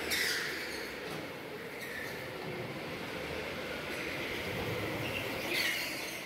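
Electric go-karts running on a sealed indoor concrete track: a steady wash of motor whine and tyre noise, with short tyre squeals as karts corner, once right at the start and again near the end.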